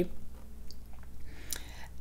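A pause between sentences: faint room tone with a few small mouth clicks and a short in-breath just before the voice resumes. No guitar is played.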